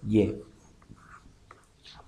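Faint scratching of quick pen strokes drawing lines, with a few small ticks.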